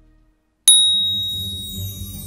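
Background music fades out into a brief silence. About two-thirds of a second in, a single bright bell-like ding is struck and rings on, fading slowly as a new music bed starts under it.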